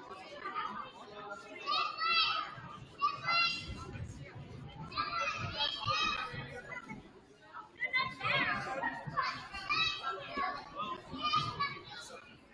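Young children shouting and calling out in high voices in a school gym, over the general talk of people on the floor.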